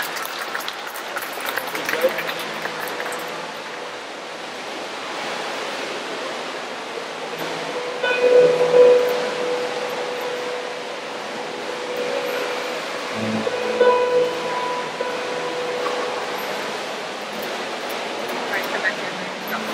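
Guests clapping for the first two or three seconds, dying away, while music plays with long held notes that swell twice, with a low bass line beneath.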